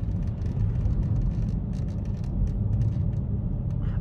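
Ford Mondeo ST220 with its 3.0 V6 running at a steady pace, heard from inside the cabin, with a steady low rumble of tyres on cobblestone paving. Irregular light clicks and rattles are scattered throughout.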